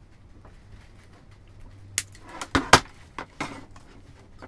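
Side cutters snipping the walkie-talkie's antenna wire off the circuit board, with a few sharp clicks and knocks from the cutters and the radio being handled, between about two and three and a half seconds in, the loudest near three seconds.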